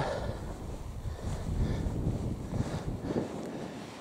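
Wind buffeting the microphone, an uneven low rumble that rises and falls.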